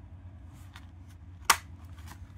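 Hand-held paper punch pressed down on a paper pocket, cutting a notch with one sharp click about one and a half seconds in, after a couple of faint clicks.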